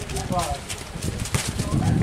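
Men talking at the pitchside, a short stretch of voice about half a second in, over a steady low rumble.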